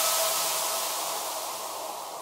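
Tail of an electronic logo sting: a hissing wash over a faint held tone, fading away steadily.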